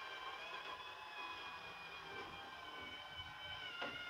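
Small electric motor of a Masters of the Universe Origins Eternia playset's monorail unit pulling the sky cage along the plastic track: a faint, steady high whine.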